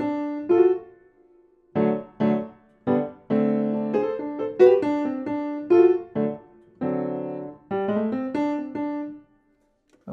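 Solo piano playing a short jazz-blues lick in separate phrases of single notes and chords, with G-sharp and F-sharp grace notes slid off with the third finger. There is a short pause about a second in, and the playing stops just before the end.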